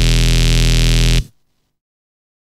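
Xfer Serum software synth playing a sustained, buzzy bass note from a wavetable made from an imported PNG image. It cuts off suddenly about a second in.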